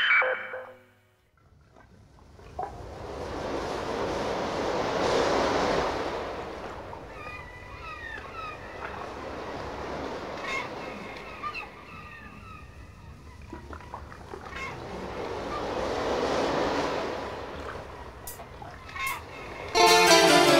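Ocean surf: two slow swells of washing noise, the first peaking about five seconds in and the second near the end, with short high chirping calls between them. A music track dies away just before.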